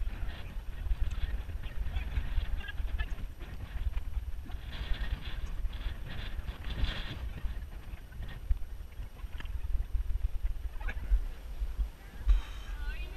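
Wind buffeting a body-worn action camera's microphone while its wearer runs, a gusty low rumble, with the runner's breathing in intermittent hissy bursts, heaviest a few seconds past the middle.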